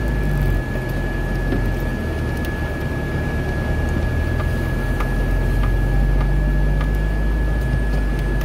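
Car cabin noise while driving: a steady low engine and road rumble with a thin, steady high-pitched whine over it.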